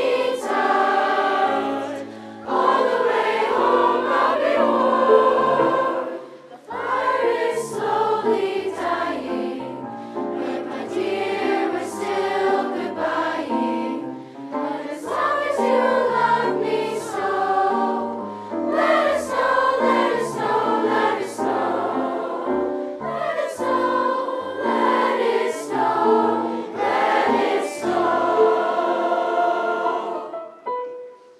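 Mixed-voice school choir of girls and boys singing, its phrases broken by a few short breaths.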